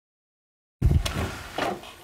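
Dead silence, then the sound cuts in abruptly just under a second in: a knock and the rustle of people moving in a small room, with a short vocal sound.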